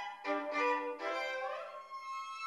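A violin playing a few long, held notes in a slow melody.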